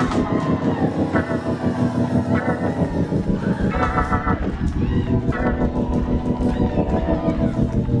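Live praise music: organ chords with a wavering vibrato played over a fast, steady drum-kit beat.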